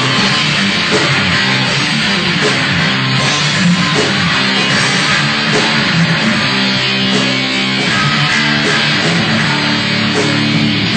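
Heavy metal band playing live, loud and steady, with distorted electric guitar leading.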